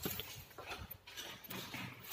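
Faint footsteps on a hard indoor floor, a few irregular steps about half a second apart, with a small knock near the start.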